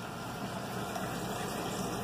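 Steady running of the water pump pushing water through a DIY venturi into the aquaponics nutrient tank. The venturi's air hose is blocked by a finger, so it is not sucking in air.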